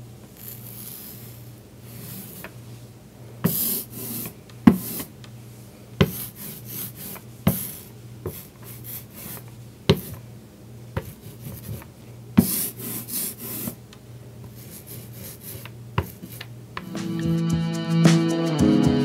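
Hand brayer rolling ink over a linocut block: a tacky hiss with each stroke and sharp clicks as the roller is set down and lifted, over a low steady hum. Guitar music comes in near the end.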